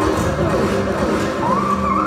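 Acoustic guitar laid flat and played lap-style, with sustained notes that glide in pitch; one note slides upward near the end.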